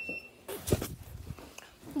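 Handling noise from the recording phone as it is picked up and moved: rustling and a few knocks, loudest from about half a second to a second in.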